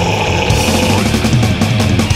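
Loud thrash/death metal music: distorted guitars, bass and drums, with the drums and cymbals coming in harder about half a second in.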